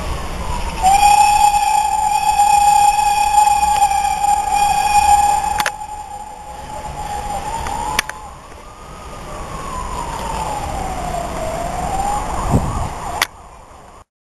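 A siren wailing, slowly rising and falling in pitch, with a loud steady high tone sounding over it from about one second in until it cuts off abruptly near six seconds.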